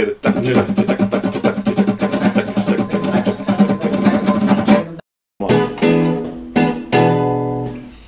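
Acoustic guitar strummed in a quick, even rhythm, heard over a video call. The sound cuts out completely for about half a second around five seconds in, then the strummed chords go on.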